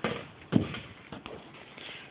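Two light knocks about half a second apart, then a few faint clicks: handling noise as a large canvas is set aside.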